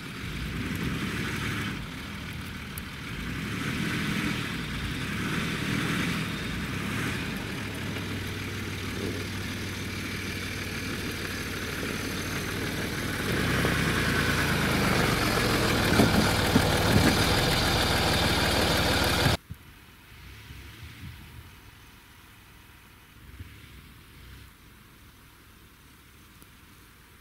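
Land Rover 4x4 engine running close by as the vehicle moves off on snow, growing louder about halfway through. It cuts off abruptly about three-quarters of the way in, leaving a much quieter outdoor background with the vehicle far off.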